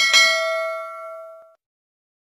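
A single notification-bell ding sound effect, one struck chime with several ringing tones that fade over about a second and a half, then cut off.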